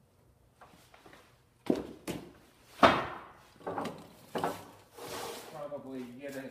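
Hollow knocks and clunks of large 4-inch PVC pipe being handled and set down on a workbench, the loudest about three seconds in, followed by a rustling near the end.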